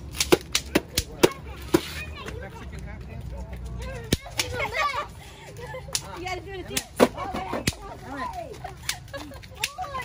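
Bang snaps (throw-down snap pops) cracking on a concrete walk and steps, a dozen or so sharp pops at irregular intervals, the loudest about seven seconds in, with excited voices and squeals between them.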